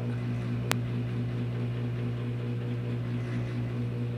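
A steady low electrical hum from a motor or appliance, with a single sharp click just under a second in.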